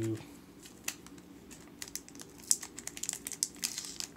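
Clear plastic protective wrap on a laptop crinkling and crackling as it is peeled off by hand, quiet at first, then from about two seconds in a quick run of sharp crackles.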